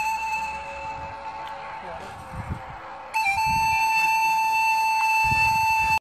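Background music: a flute-like wind instrument holding one long steady note. The note fades away in the first second and comes back suddenly about three seconds in, with faint low rumbles in the gap.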